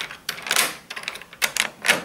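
Key turning in a newly fitted euro cylinder lock on a UPVC door, a series of about five clicks and short scrapes as the lock is engaged to test it.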